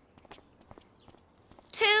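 Footsteps of two people walking: a quick, irregular series of soft taps.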